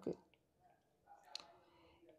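A stylus tapping on a tablet's glass screen while handwriting, a faint click about a second and a half in.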